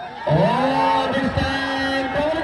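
Cricket crowd shouting and cheering as the ball is struck, starting suddenly about a quarter second in, with one long held shout standing out above the rest.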